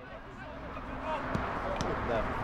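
Ambience at an open-air football pitch: a steady outdoor haze with faint distant shouts from the players, and two short knocks in the second half.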